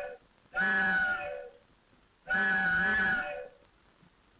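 Two drawn-out, animal-like vocal calls from the cartoon soundtrack, each about a second long at a fairly steady pitch, the second starting about two seconds in.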